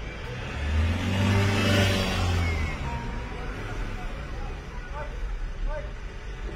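A motor vehicle's engine passing close by, heard from inside a car: it swells about half a second in, peaks around two seconds and fades away.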